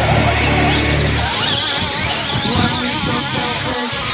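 Heavy rock music: a held low note for about the first second, then high, wavering guitar lines.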